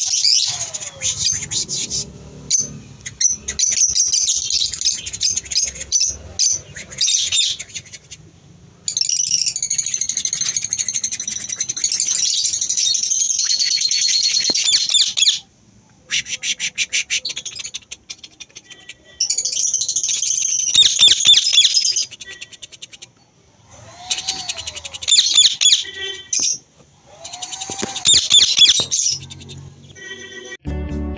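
Caged lovebirds and parakeets chattering and squawking in loud, shrill, rapid calls. The calls come in several long stretches that break off abruptly between short gaps.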